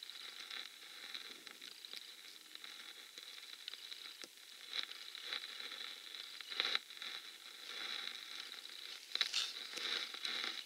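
Quiet background hiss with a faint, steady high-pitched whine, broken by a few short rustles; the loudest comes about two-thirds of the way in, with a small cluster near the end.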